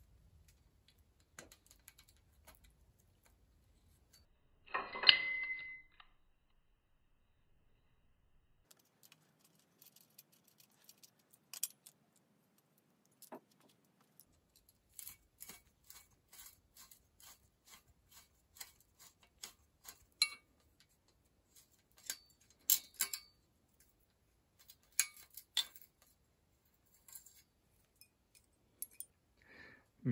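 Light metallic clicks and clinks of a spanner on the down-tube shifter clamp bolt of an old steel road-bike frame, scattered and irregular, with a louder clatter of handling about five seconds in.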